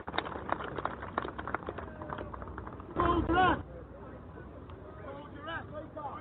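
Background voices in a muffled, low-quality recording of a speech gathering. A run of sharp clicks and knocks fills the first two seconds, a voice calls out loudly for about half a second some three seconds in, and then quieter conversation goes on behind.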